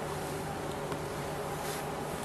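A steady, low-level buzz over an even hiss: a background hum in the recording, with nothing else happening.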